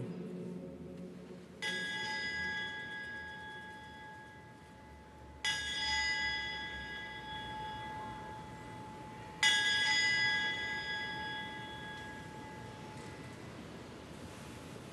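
An altar bell is struck three times, about four seconds apart, and each strike rings on and slowly fades. It marks the elevation of the chalice at the consecration.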